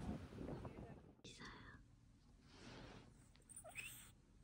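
Near silence: faint voices in the background fade out about a second in, leaving only a few soft, faint sounds.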